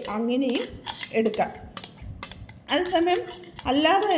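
A metal spoon clinking and scraping against a stainless-steel blender jar as it is emptied into a glass bowl, with a few sharp clinks around the middle. A woman speaks briefly in between.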